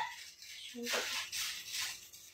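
Plastic packaging rustling and crinkling softly in the hands as a wrapped package is handled and opened, in a few short bursts.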